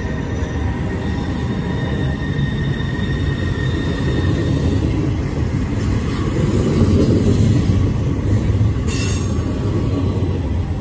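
Union Pacific double-stack intermodal freight train's well cars rolling past close by: a steady, heavy rumble of steel wheels on rail, with a faint high steady squeal running through it. A short, sharp high-pitched burst comes about nine seconds in.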